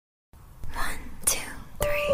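A short silence, then a breathy, whispered vocal begins the next acoustic cover song. Near the end, sustained instrument notes come in under it.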